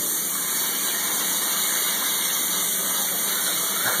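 Steady rush of water from a hand-held shower sprayer rinsing a dog in a stainless-steel bathing tub.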